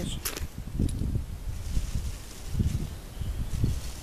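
Low, uneven rumble of wind buffeting the microphone, swelling a few times, with a light rustle over it.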